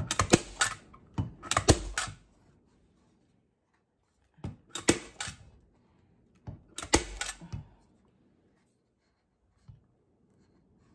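Hand-squeezed Arrow PowerShot staple gun firing staples through fleece into a wooden lid. It fires a quick string of about five sharp shots in the first two seconds, then two more groups of three or four at about four and a half and seven seconds.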